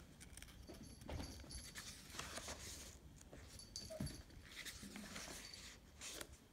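Pages of a paperback workbook being turned and handled: soft, quiet paper rustling. A few short, faint high-pitched whines sound in the background.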